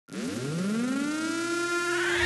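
A siren-like tone at the start of the soundtrack: it rises in pitch over about the first second, then holds one steady pitch.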